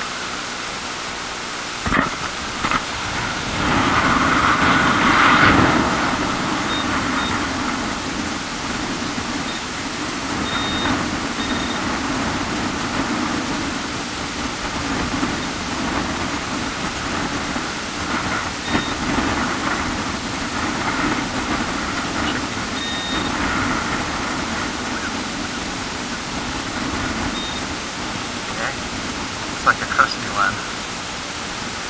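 Steady rushing noise of wind and surf, loudest about four to six seconds in. Over it come a handful of short, high beeps from a metal-detector pinpointer homing in on a target, and a couple of sharp clicks.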